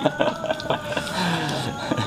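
Men's voices, low murmurs and a falling hum about a second in, over steady held background tones.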